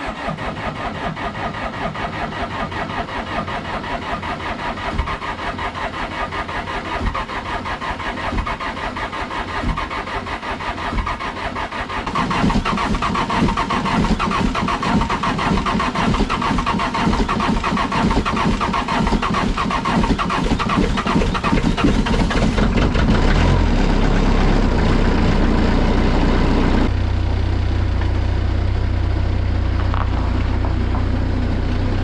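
Bobcat skid-steer loader's diesel engine starting cold on winter diesel. It runs with a fast rhythmic churn for the first dozen seconds, gets louder from about 12 seconds in, and settles into a steadier idle with a low hum over the last few seconds.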